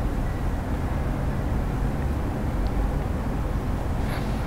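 Steady low background hum with a faint hiss and no distinct events: room noise between the words.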